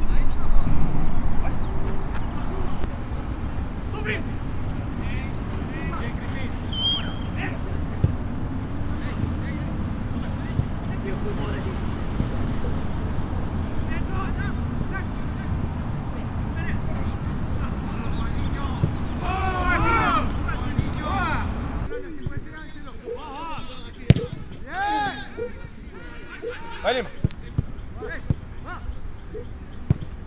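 Football training: a few sharp thuds of a football being kicked, with players' shouts and calls around them. A steady low rumble lies under the first two-thirds and cuts off suddenly.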